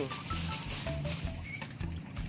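Aluminium foil crinkling and rustling as a sheet is pulled off the roll and handled.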